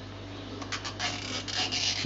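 Long plastic cable tie being pulled through its locking head: a rasping run of fine clicks that starts about half a second in. A steady low hum runs underneath.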